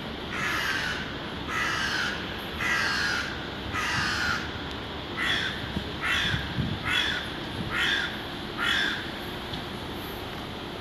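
A bird calling: a series of nine harsh calls, roughly one a second, the first four longer than the later five.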